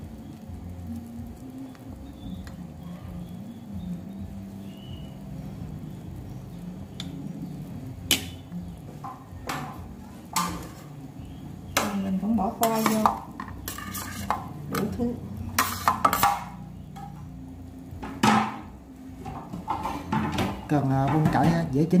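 Kitchen clatter at a stainless steel soup pot: utensils knock against the pot, and chunks of potato are tipped in. A steady low background gives way, about eight seconds in, to a run of sharp knocks that come thicker in the second half.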